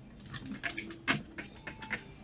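A quick, uneven run of small clicks and light rattling, like small hard objects being handled, with the sharpest click about a second in.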